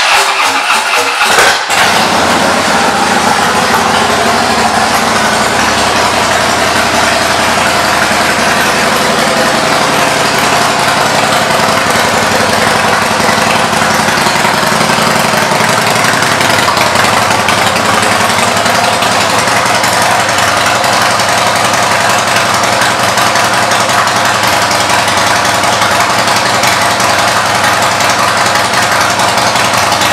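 2016 Harley-Davidson Fat Boy S V-twin with Vance & Hines exhaust pipes and a Screamin' Eagle air cleaner being started: the starter cranks briefly and the engine catches about a second and a half in, then idles steadily and loudly.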